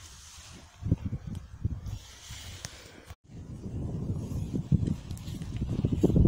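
Wind buffeting a phone microphone outdoors, in irregular low gusts at first, then a steadier, growing low rumble after a brief dropout about three seconds in.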